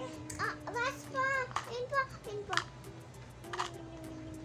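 A young child's high voice babbling and vocalizing without clear words over quiet background music, with a few sharp clicks from toys being handled.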